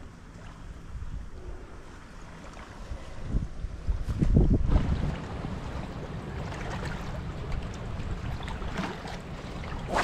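Wind buffeting the microphone with a low rumble, gusting hardest about four to five seconds in.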